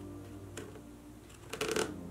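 Plastic spirograph gear and pen tip scraping and ticking lightly as the gear is turned inside a plastic stencil template, faint under soft background music.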